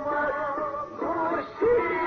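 Song from an old film soundtrack: a voice singing an ornamented, wavering melody with instrumental accompaniment.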